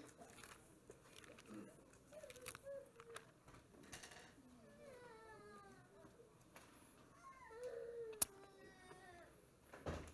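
Bible pages being leafed through in a quiet room, with soft rustles and clicks, a sharp tap late on and a thump at the end. Faint whining cries, several falling in pitch, are heard behind it.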